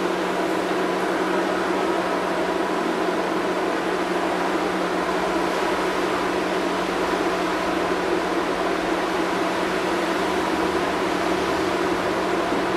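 Interior running noise of an LM-99AVN tram in motion: a steady hum with a few fixed tones over an even rush of running noise.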